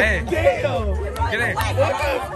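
Several voices chattering and calling out over one another, over music with a heavy, pulsing bass.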